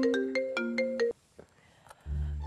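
Mobile phone ringtone playing a quick melody of short, separate notes, which cuts off about halfway through when the call is answered.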